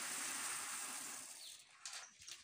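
Dry beans pouring from a plastic basin into a plastic sack: a steady rattling hiss that fades out about one and a half seconds in, then a few sharp clicks near the end.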